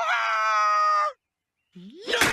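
A cartoon man's held yell, about a second long and sagging slightly in pitch, that cuts off abruptly.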